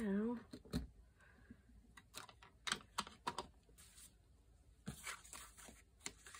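Paper and card being handled during papercraft work: scattered light crackles, taps and short rustles, with a brief hum of a voice at the very start.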